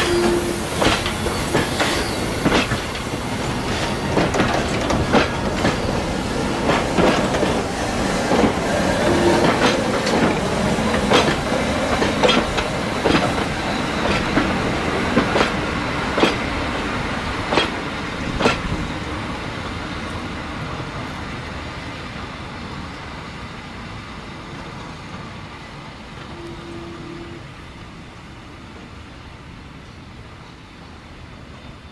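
Steam locomotive FS 625 and its train of old carriages rolling slowly through yard points, wheels clicking irregularly over rail joints and switches, with a few brief squeals. The clicking stops after about 18 seconds and the rolling sound fades as the train moves away.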